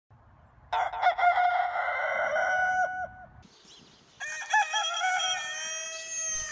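Two rooster crows one after the other. The first is a long crow of about two and a half seconds. After a short pause, a second rooster, a white Silkie, gives another long crow that is still going at the end.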